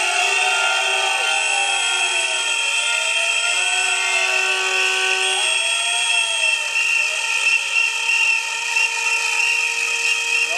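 Many whistles and noisemakers blown together at once, a dense shrill din of held notes. A lower tone swoops up and down repeatedly through it during the first six seconds.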